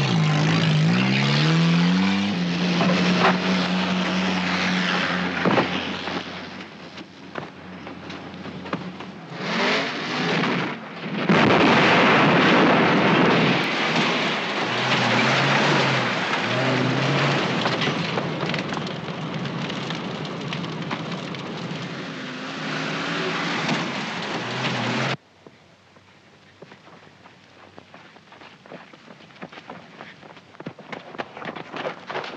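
Loud engine noise rising in pitch at first, then a heavy steady rush with a few sharp cracks over it, cutting off abruptly about 25 seconds in.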